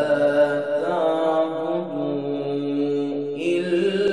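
A male voice chanting Quranic recitation in a melodic maqam. He draws out long held notes that step to a new pitch a few times.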